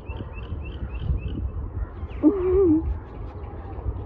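A stray cat gives one short, wavering meow a little past two seconds in, after a quick run of about six high chirps in the first second.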